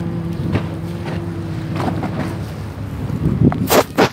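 Steady low drone of a ferry's engine for about two and a half seconds, over wind rumbling on the microphone. Near the end, gusts buffet the microphone loudly.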